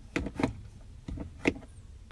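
Plastic clicks and knocks of a 2015 Ford Explorer's overhead-console sunglasses holder being pushed shut: about four short, sharp taps spread over a second and a half.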